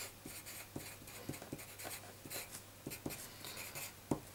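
Pencil writing on paper: faint, irregular scratching strokes and light ticks of the point as a line of algebra is written out.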